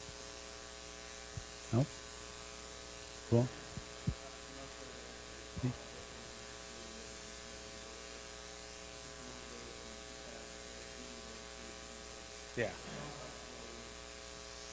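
Steady electrical mains hum on the room's audio system. A faint, distant voice is heard briefly a few times, an audience member speaking away from the microphone.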